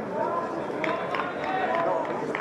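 Distant voices of players and spectators calling out over a steady outdoor background hum, with no clear words.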